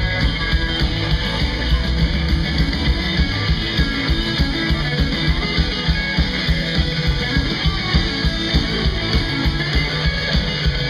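Live rock-and-roll band playing: electric guitars, electric bass and a drum kit with a steady driving beat, no singing heard.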